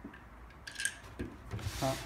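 Light metal clicks from a hand-lever button badge press's steel dies and locating pins being handled, then a short scraping rub near the end as the die tray is moved.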